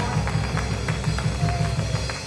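Church band music driven by a drum kit played hard and fast, a rapid, steady low beat with sharp drum and cymbal hits over it; the drumming is heavy enough to be called 'tearing them drums up'.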